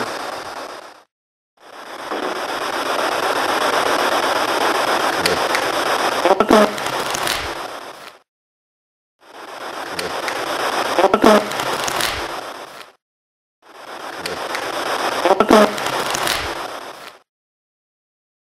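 Amplified hiss from a voice recorder, played three times with short cuts of silence between. Near the end of each pass a brief faint sound with a few clicks stands out, the kind of spot that is played back as a possible EVP.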